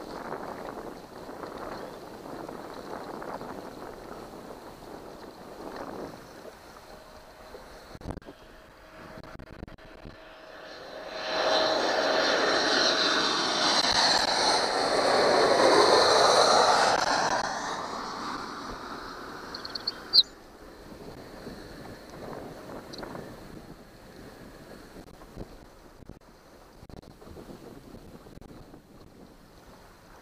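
Jet airliner flying low overhead on its landing approach: its engine noise swells about a third of the way in, falls in pitch as it passes, and fades over several seconds. A single sharp click follows shortly after.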